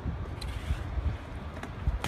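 Low wind rumble on the microphone, with the faint rolling and a few light ticks of a BMX bike's tyres on concrete.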